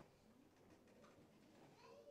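Near silence with faint room tone, and near the end a faint, short, high mewing call that rises and falls, like a cat's meow.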